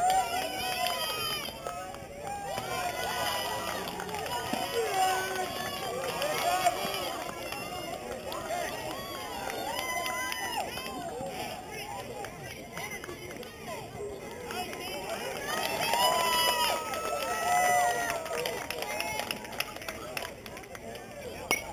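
Several voices of players and spectators calling out and shouting across a baseball field, overlapping so that no words come through, loudest near the end.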